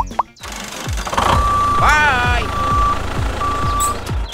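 Vehicle reversing-beeper sound effect: a single high electronic beep held about half a second, sounding three times about a second apart. It plays over background music with a steady low beat, and a short squeaky voice-like sound effect comes between the first two beeps.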